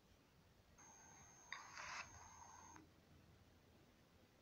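Near silence, with a faint sound lasting about two seconds starting about a second in. It carries a thin steady high tone and a sharp click about halfway through.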